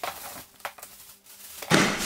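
Thin plastic wrapping rustling, with a couple of light clicks, as a large Lock & Lock plastic storage container is handled, then a louder burst of plastic rustling and knocking near the end as it is lifted by its carry handle.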